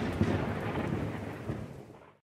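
The dying rumble and crackle of a big boom sound effect, fading steadily away and cutting off at the very end.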